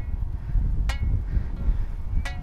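Wind buffeting the microphone in a steady low rumble, with two short sharp ticks about a second apart.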